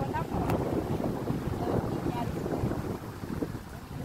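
Wind buffeting the phone's microphone, an uneven rumbling noise throughout, over choppy open water.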